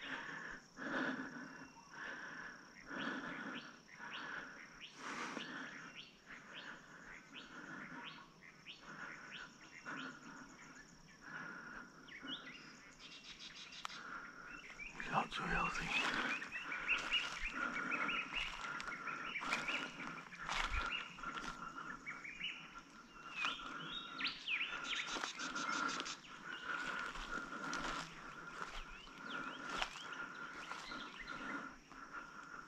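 Footsteps crunching slowly through dry fallen leaves, roughly one step a second, with birds chirping and calling around them; the birdsong grows busier in the second half.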